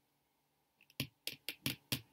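Tarot cards being handled: a quick run of about five sharp clicks, starting about a second in.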